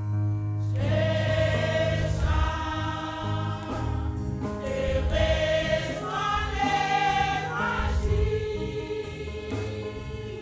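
A women's church choir singing a gospel hymn together with instruments accompanying; the voices come in about a second in.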